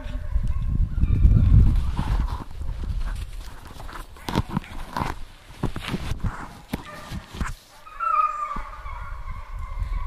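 Deer hounds baying while running a trail, with a long, slowly falling bawl from about eight seconds in. Under it, a hunter's footsteps crunch through dry brush, with rumble from his movement on the body-worn camera's mic.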